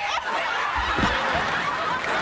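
Studio audience laughing loudly, a dense crowd laugh that swells up at the start, with a low thud about a second in.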